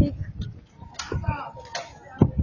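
Wooden cross dragged over an asphalt street, its foot knocking and scraping a few times, with crowd voices around it.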